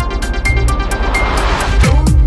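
Instrumental break in an electronic pop song: a noise sweep swells over the beat and ends in a downward pitch swoop as the full beat comes back in.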